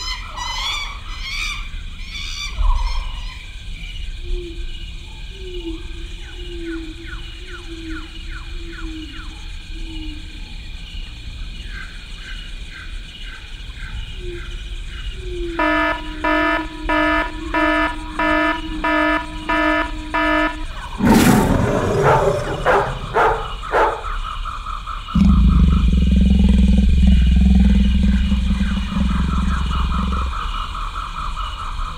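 Turkish Van cat growling and yowling at a dog in long, wavering calls. A third of the way in comes a run of regular pulsing sounds, then a loud crash, and a loud low rumble fills the last few seconds.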